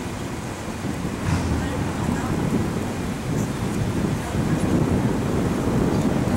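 Wind buffeting the camera microphone: a low, uneven rumble that runs through the pause in talk.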